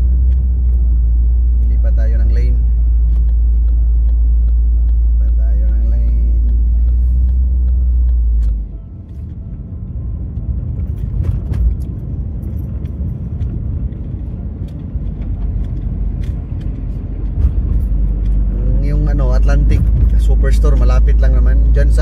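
A car driving, heard from inside the cabin: a steady low road rumble that drops suddenly about eight seconds in and builds back up near the end, with faint voices over it.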